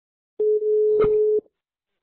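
Mobile phone ringback tone: a single steady tone about a second long, with a click partway through, as the outgoing call rings on the Arduino's SIM800L GSM module before it answers.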